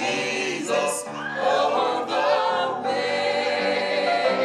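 A small group of men and women singing a hymn together in harmony, with long held notes.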